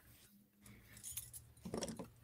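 Faint, light clinking of small strung beads on beading wire being handled, a few small clicks in the second half.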